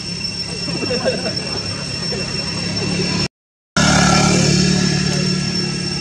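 Steady background with a low rumble, a constant high-pitched whine and faint indistinct voices; the sound cuts out completely for about half a second a little past the middle.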